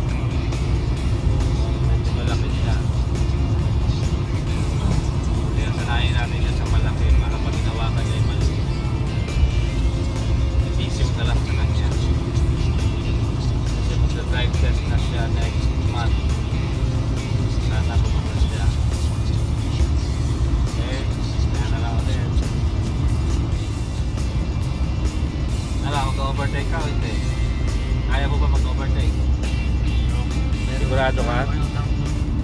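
Steady road and engine rumble inside the cab of a Chevrolet pickup cruising at highway speed, with background music and a voice over it.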